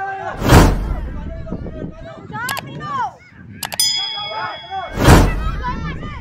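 Children shouting and calling around a youth football pitch, broken by two loud heavy thumps about four and a half seconds apart. A sharp ding with a lingering ring comes between them.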